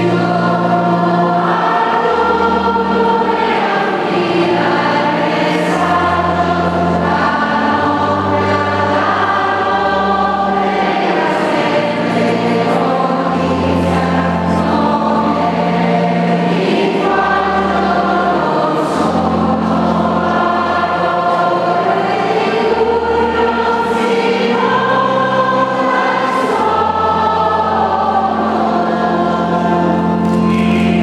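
Church choir singing a processional hymn over sustained instrumental bass notes that change every second or two.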